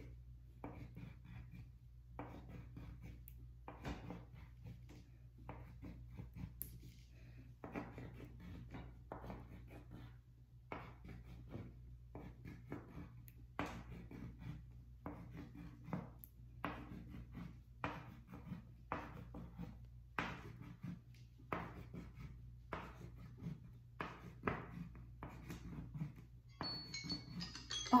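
A pen drawing quick strokes on paper clipped to a board, about two strokes a second, as squares are drawn against the clock. Near the end a timer alarm starts chiming, marking the end of the timed minute.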